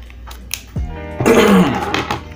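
A person clearing their throat about a second in, a short voiced hum running into a loud rasp.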